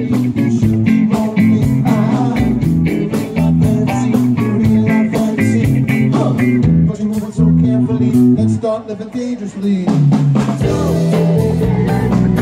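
Live band playing loud blues-rock: electric guitar, bass guitar and drum kit keeping a steady beat. The beat thins out and the sound drops a little about eight seconds in, then the full band comes back in.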